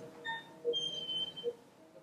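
Short, soft low beeps repeating about every three-quarters of a second, with a brief high steady tone about a second in. These are typical of a phacoemulsification machine's aspiration tones while the irrigation/aspiration probe works in the eye.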